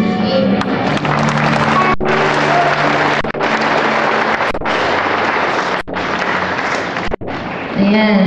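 A live worship band with electric guitar, bass and drums plays loud, full-volume music, with cymbals washing across the top. The sound breaks off briefly about every second and a quarter.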